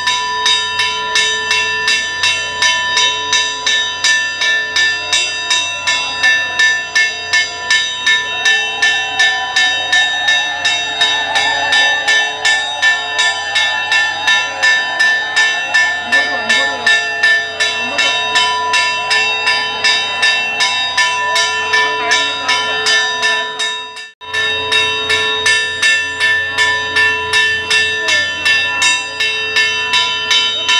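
Temple bell rung over and over at a quick, steady beat, its ringing tones carrying on between strokes. Crowd voices rise under it in the middle, and the sound drops out for an instant about three-quarters of the way through, then resumes.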